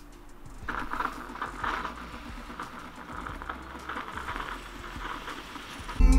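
Irregular scrubbing and rubbing strokes against a painted baseboard, starting about a second in and going on in uneven swells.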